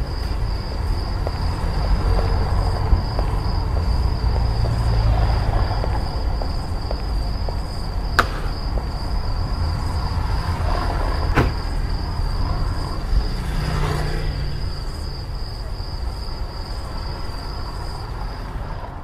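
A car engine idling with a steady low rumble. A steady high-pitched tone runs above it, and two sharp clicks come a few seconds apart near the middle.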